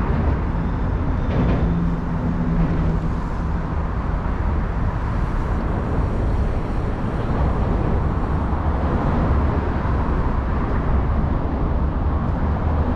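Steady city traffic noise, a continuous mix of engines and tyres with a deep rumble, and a faint low hum for a couple of seconds near the start.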